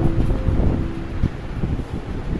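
Low, uneven rumble of microphone handling noise as a handheld phone camera is moved, with the last held note of background guitar music fading out about a second in.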